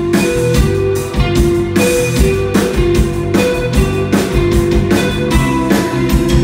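Live rock band music: an electric guitar playing a lead line of held notes over a steady drum beat, at a sound check.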